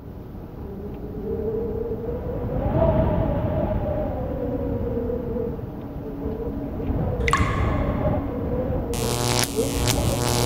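Dark synthesized drone with a slowly wavering tone, then a single sharp crack about seven seconds in and a run of crackling electric zaps near the end: a lightning sound effect for an outro logo.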